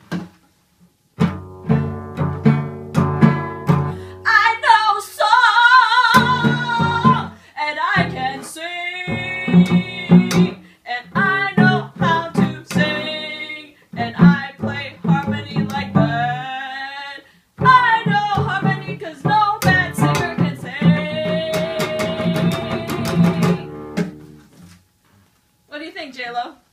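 A cello held like a guitar, its strings strummed and plucked in chords, with a woman singing over it. The playing stops briefly twice near the middle.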